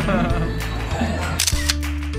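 Background music with a steady bass line. Laughter and talking run over it for about the first second and a half, then only the music is left.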